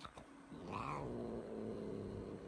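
Long-haired cat growling low and steadily, with a short higher yowl about a second in: the angry warning of a cat that doesn't want to be brushed.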